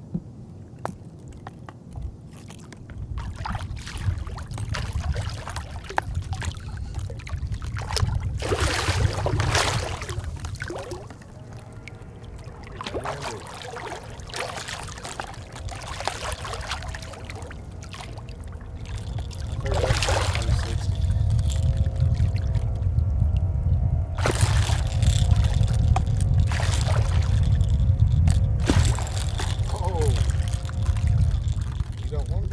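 A large hooked catfish splashing at the water's surface beside the boat in repeated bursts, over a steady low rumble. A faint steady hum comes in partway through.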